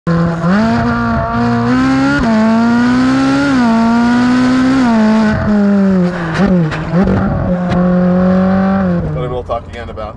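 Ferrari 458 Speciale's naturally aspirated 4.5-litre V8 exhaust heard close to the tailpipe while driving. The pitch climbs steadily and drops sharply three times in the first five seconds as it shifts up, dips and recovers in the middle, then holds steady before fading out near the end.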